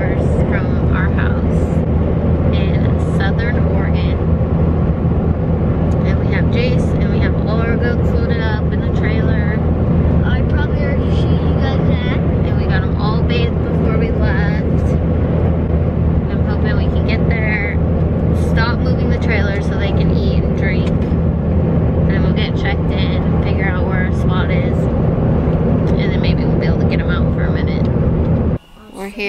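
Steady low drone of a pickup truck's engine and tyres heard from inside the cab while driving on the highway, with a voice over it.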